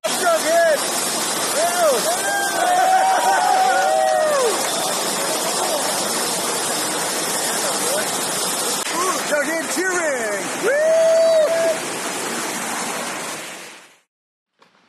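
Steady rush of water from an indoor surf-simulator wave ride, with people's voices shouting and whooping over it, mostly about two to four seconds in and again around ten seconds. The sound fades out near the end.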